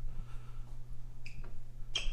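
Quiet room tone: a steady low hum, with one brief faint high chirp about a second and a quarter in.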